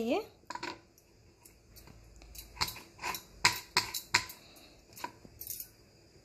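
Kitchen knife slicing through spiny gourds (kakrol) on a wooden cutting board: a string of irregular sharp knocks as the blade comes down on the board.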